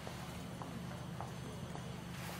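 Low steady background hum with a few faint light ticks, about one every half second.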